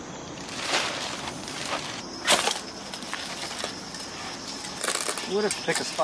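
Outdoor woodland ambience with a few brief sharp rustles or scuffs, and a person's voice heard briefly near the end.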